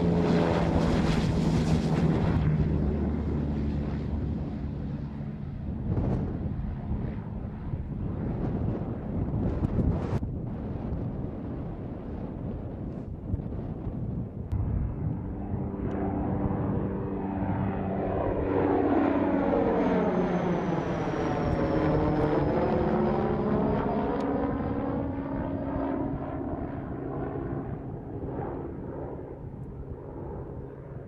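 MQ-9 Reaper drone's turboprop engine and pusher propeller running at takeoff power, loudest close by at first. Around twenty seconds in it passes overhead with a sweeping, whooshing change in tone, and a high whine falls slowly in pitch as it goes by.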